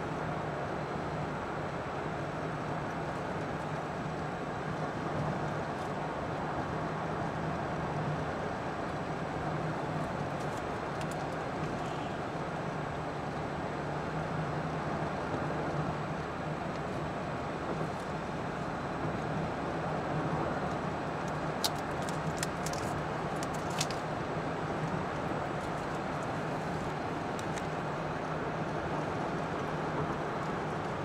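Steady road noise inside a moving car at highway speed: tyre and engine drone with a low hum. A few light clicks sound about two-thirds of the way through.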